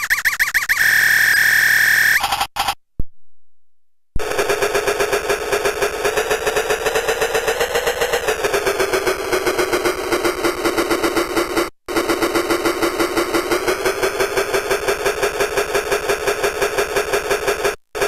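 Circuit-bent toy typewriter's electronic voice: a held tone that cuts off, then after a short gap the toy's sound retriggered in a fast, even machine-gun stutter by a Korg Monotribe's trigger pulses. The stutter's pitch slides down and later back up as the bent pitch control is turned.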